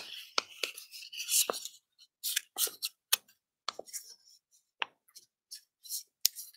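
A sheet of origami paper crinkling and crackling between the fingers as a corner is lifted, folded up and creased: a scatter of short, irregular crackles.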